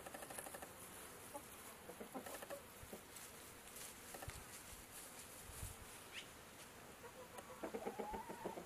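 Faint, soft clucking of chickens, with a brief high chirp about six seconds in and busier clucking near the end.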